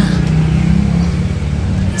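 A motor vehicle engine running steadily nearby, a low continuous rumble, with voices in the background.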